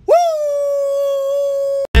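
One long howling "woo" cry: the voice swoops up quickly and then holds a steady high pitch for well over a second before it cuts off abruptly.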